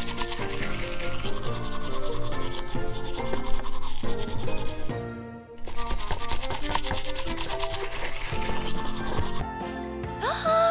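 A toothbrush scrubbing back and forth over dried white beans glued onto a cardboard picture, a rapid raspy rubbing that pauses briefly about five seconds in and stops near the end. Background music runs beneath it.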